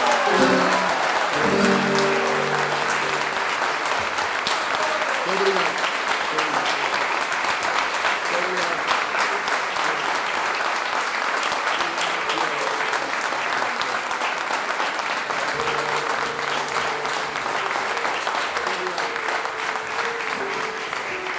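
Audience applauding steadily in a hall, with the last plucked notes of a Portuguese guitar and viola de fado dying away in the first couple of seconds.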